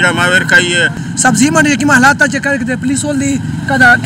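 Speech only: men talking into a reporter's microphone, with a different, higher voice taking over about a second in.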